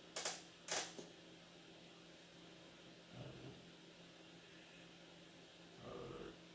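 Two sharp clicks about half a second apart from trading cards being handled and snapped down onto a playmat, over a faint steady hum.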